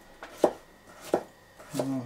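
A bushcraft knife slicing radishes on a wooden cutting board: three separate cuts, about two-thirds of a second apart, each ending in a sharp knock of the blade on the board.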